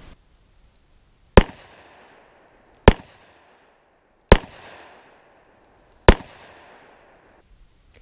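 Four shots from a Smith & Wesson Model 637 snub-nose .38 Special revolver firing Corbon +P ammunition, about a second and a half apart, each followed by an echo that fades over about a second.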